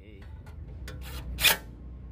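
Cordless drill driving a license-plate mounting screw into a car bumper: a few light clicks of the bit, then one short burst of the drill about one and a half seconds in as the screw is snugged tight.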